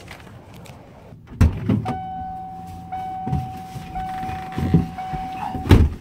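Ford E250 van's driver door opening with a knock, then its warning chime sounding a steady tone, renewed about once a second, over rustling as someone climbs into the seat. The chime stops as the door shuts with a thud near the end.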